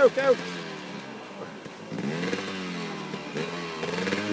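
Enduro motorcycle engine revving in quick surges as its rear wheel spins through deep mud. The revving drops away about half a second in and comes back lower about two seconds in.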